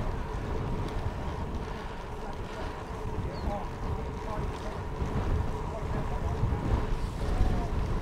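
Wind buffeting the microphone of a bike-mounted camera while riding, a steady low rumble.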